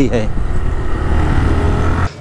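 TVS Raider 125 single-cylinder motorcycle being ridden on the road: the engine running with a steady low rumble of wind on the rider's camera microphone.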